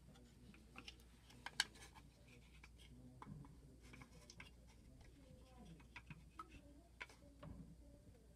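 Near silence, with a few faint clicks and taps from a small wooden box frame being handled; the sharpest click comes about one and a half seconds in.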